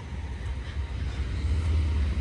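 A car moving slowly nearby: a low engine and tyre rumble that grows a little louder after about a second.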